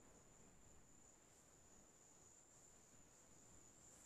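Near silence: faint room tone with a thin, steady high-pitched tone.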